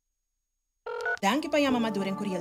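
Silence, then just under a second in a telephone rings briefly with a steady electronic tone, followed by a voice over background music.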